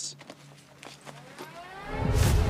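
Trailer sound design: a low steady drone, then from about halfway several tones sweep upward together and swell louder, a riser building toward a hit.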